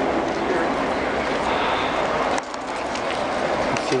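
Steady rushing noise of wind on the microphone, with a faint murmur of spectators' voices underneath. It dips suddenly about two and a half seconds in.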